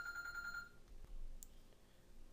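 A steady, high-pitched electronic beep tone that cuts off about three-quarters of a second in, followed by faint room tone with one short tick near the middle.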